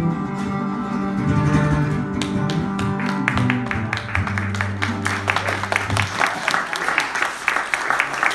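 Acoustic and electric guitars playing the closing bars of a song, with a low note held until about six seconds in. A rapid run of sharp strokes joins from about three seconds in.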